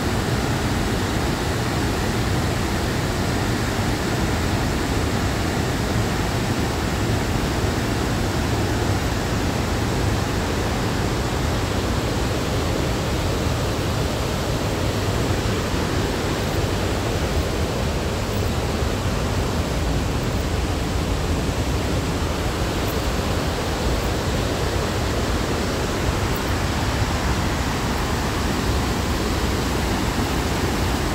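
A river waterfall and its whitewater rapids rushing: a steady, unbroken noise that holds the same level throughout.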